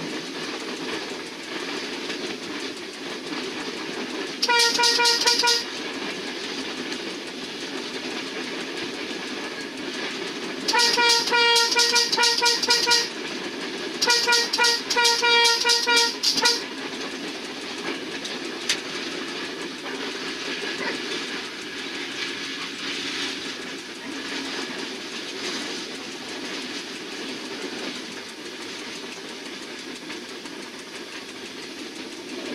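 Passenger train running along the track with a steady rumble while its horn sounds on one note. The horn gives one blast of about a second, then two longer runs of short, broken blasts, before the train runs on with only the track noise.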